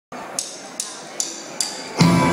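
A drummer's count-in: four evenly spaced, sharp clicks about 0.4 s apart over a low crowd murmur, leading straight into the band starting the song.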